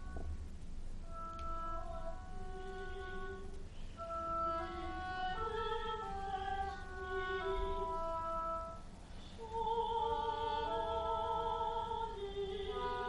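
Classical chamber music for oboe and harp: a slow melody of long held notes, with a short lull about three-quarters of the way through.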